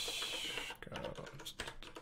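Typing on a computer keyboard: a rapid run of key clicks from just under a second in, after a short hiss at the start.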